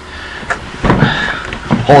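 Handling and movement noise from a person shifting close to the microphone: a click about half a second in, then rustling and knocking with a brief squeak about a second in.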